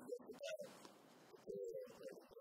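A dove cooing faintly, with a low note about half a second in and a longer one near the end.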